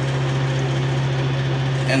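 A steady low machine hum with an even hiss over it, unchanging throughout.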